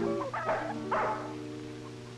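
Solo guitar music: chords plucked about half a second and one second in, their notes ringing on over a steady low hum.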